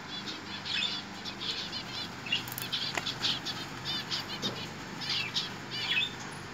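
Many small caged birds chirping in an aviary: a busy, overlapping run of short high chirps, several a second, over a steady low hum.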